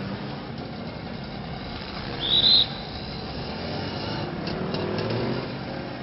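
Steady background hiss with a single short, high chirp about two seconds in; the hiss swells slightly later on.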